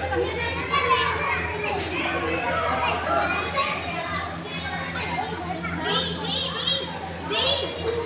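Many children's voices talking and calling out at once, with a few high, excited calls near the end. A steady low hum runs underneath.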